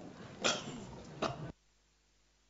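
A person coughs twice, short and sharp, over the murmur of a crowded hall. The sound cuts off abruptly about a second and a half in.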